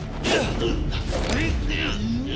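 Struggle sounds from two men grappling over a knife: two sharp hits, a little after the start and just past the middle, mixed with short strained grunts.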